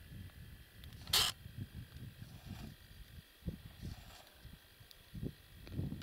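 Outdoor wind buffeting the microphone in uneven low rumbles, with one short, sharp hiss-like rustle about a second in.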